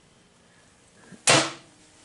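The hinged sheet-metal change-gear cover on a Brown & Sharpe 00 screw machine being shut, one sharp metallic bang just over a second in.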